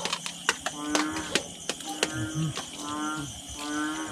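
Spoons clinking and scraping on plates during a meal, a quick scatter of sharp clicks, while short low-pitched calls, each about half a second long, sound again and again over them.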